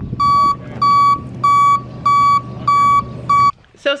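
Backup alarm of a flatbed tow truck beeping as it reverses: six even beeps, about one every 0.6 seconds, over the steady rumble of the truck's engine. The sound cuts off suddenly near the end.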